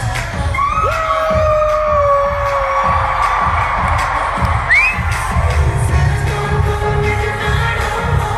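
Live pop music from a concert stage: a singer holds one long note over a band with a pulsing bass line. About five seconds in, a short high cry slides upward.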